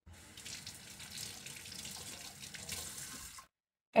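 Tap water running into a sink as dentures are rinsed under it, cutting off about three and a half seconds in.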